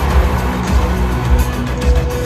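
Live rock-pop band music played loudly over a stadium PA, with a heavy, booming bass and held keyboard tones and no singing.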